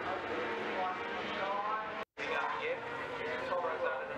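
600cc racing motorcycle engines revving as the bikes lean through a corner, several rising pitches overlapping. The sound cuts out for a moment about two seconds in, then the engines pick up again.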